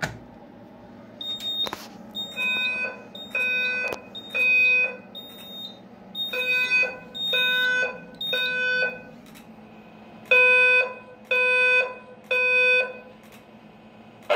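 Fire alarm voice evacuation system sounding the Code 3 low-frequency tone through a System Sensor SpectrAlert Advance speaker strobe: a low, buzzy tone in groups of three half-second pulses, each group followed by a pause, repeated three times.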